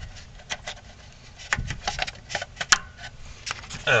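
Irregular clicks and rubbing as hands work rubber vacuum hoses and plastic connectors in an engine bay, several sharper clicks around the middle.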